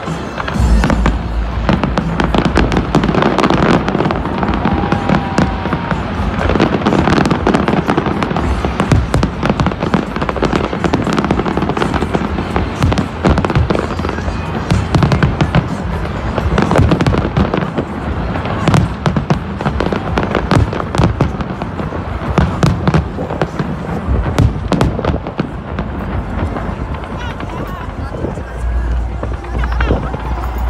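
Aerial fireworks display bursting in rapid succession: a near-continuous run of sharp bangs and crackles, with deep booms about a second in and again near the end.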